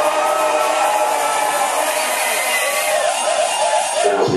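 Live DJ set of electronic dance music in a build-up with the bass cut out, leaving a bright, noisy wash with pitched tones and a run of short rising tones near the end. Crowd noise sits under the music.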